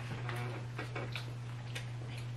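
Faint, scattered light clicks and ticks of hands handling food and containers on a table, over a steady low hum.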